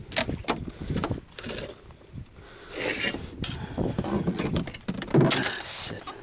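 Irregular knocks, rubs and scrapes as a landing net holding a freshly caught redfish is brought aboard and handled on a fibreglass skiff's deck, with a louder thump about five seconds in.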